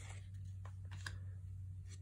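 Faint handling of a stack of 1990 Fleer basketball trading cards, the front card slid off and tucked to the back of the pack, with a couple of soft clicks about half a second and a second in. A low steady hum runs underneath.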